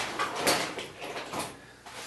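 Someone rummaging through parts for a piece of foam: a run of short rustles, scrapes and light knocks.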